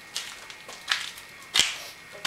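Three sharp knocks or clatters, the loudest about one and a half seconds in, with a short ringing tail.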